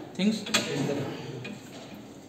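A single sharp click about half a second in, from a finger pressing the button on a PASCO wireless Smart Cart to switch it on.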